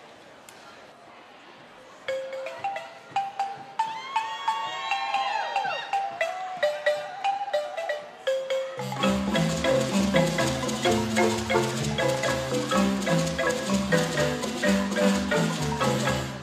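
Handmade Zimbabwean-style Shona marimbas: a single higher marimba starts the melody about two seconds in, with a voice calling briefly over it. About nine seconds in the lower and bass marimbas come in and the full ensemble plays an interlocking rhythmic groove.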